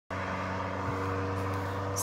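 A motor vehicle engine running at a steady, unchanging pitch.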